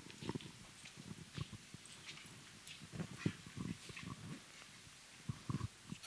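Faint handling noise from a handheld microphone being passed and gripped: a scatter of irregular soft bumps and rubs with a few light clicks.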